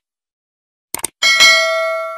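Sound effects of a subscribe-button animation: a quick double mouse click about a second in, then a bell-style notification ding, struck twice in quick succession, ringing on for over a second.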